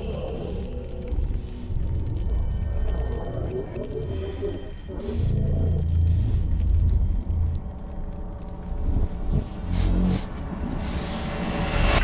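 Ominous horror-film score: a deep low rumble with long held high tones, and a brief hiss near the end.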